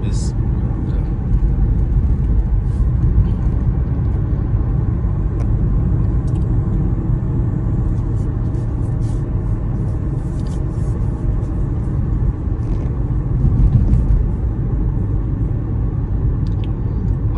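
Steady low rumble of a car's engine and road noise, heard from inside the cabin while driving, with a few faint ticks.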